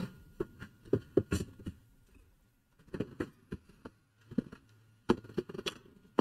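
Paintbrush dabbing and stroking on an acrylic painting panel, giving irregular light taps and clicks in short clusters.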